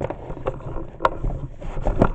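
A book being forced into a tightly packed bookshelf: scraping and rustling with several sharp knocks, over a low rumble from hands handling the camera microphone.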